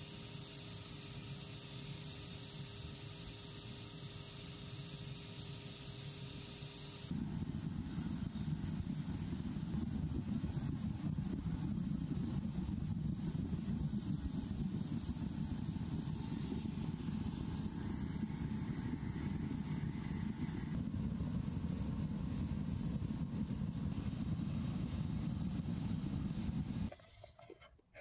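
A steady low hum with a faint steady whine for the first several seconds. Then the sound changes at once to the louder, steady low rumble of a fuel-fired cupellation furnace burner running, which stops about a second before the end.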